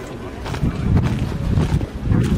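Wind buffeting the microphone, a low rumble that grows stronger about half a second in, over the tramp of a column of guards marching in step on cobblestones.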